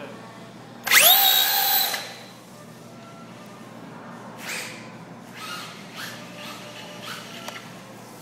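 Traxxas Rustler VXL RC truck's brushless motor whining up fast as it launches with its wheels spinning on the slippery floor, loud for about a second starting about a second in. Several shorter, fainter whirs follow in the second half as it drives and spins its wheels again.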